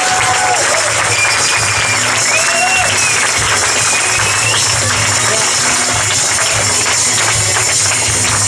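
A club audience applauding over walk-on music with a steady pulsing bass beat.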